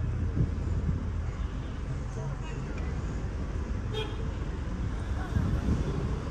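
Steady low rumble of a car heard from inside its cabin, with street traffic noise outside. There is a brief click about four seconds in, and a faint voice near the end.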